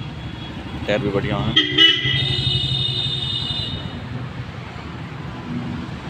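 A vehicle horn sounds one steady high-pitched note, held for about two seconds, starting a little under two seconds in.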